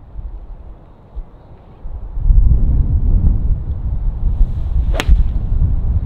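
A single sharp crack about five seconds in as a Ping S55 cast iron strikes a Bridgestone Tour B330 golf ball on a full swing. From about two seconds in, a loud low rumble of wind on the microphone runs under it.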